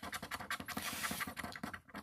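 Coin scraping the scratch-off coating of a paper lottery ticket in quick, short strokes, pausing just before the end.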